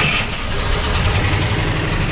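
VW T3 (T25) van engine running steadily, having just fired up straight away on the starter. A new battery negative earth cable has replaced one that was getting hot and making it slow to crank.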